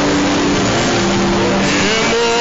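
A congregation praying aloud all at once, many voices merging into a loud, continuous roar, over held keyboard notes.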